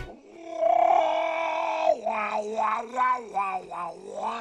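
A cartoon seagull's croaking, off-key singing voice. It holds one long strained note, then breaks into about five short choppy notes at a lower pitch, bad enough to be mocked as an animal in misery.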